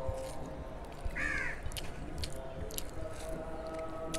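Fingers mixing rice into chicken curry on a plate, with short wet clicks and squishes. A bird gives one short call about a second in.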